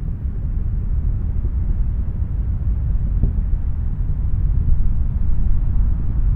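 Deep, steady rumble of Space Shuttle Atlantis in powered ascent, its twin solid rocket boosters and three main engines still burning, heard from far below.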